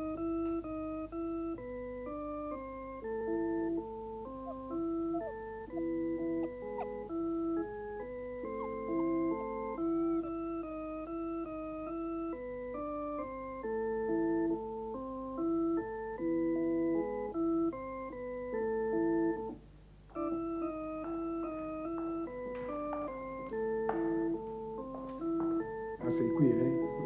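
Electronic organ playing a slow, simple melody over held lower notes, each note starting and stopping cleanly, with a short break about twenty seconds in.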